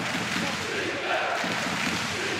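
Ice hockey arena crowd noise: a steady hubbub of many indistinct voices.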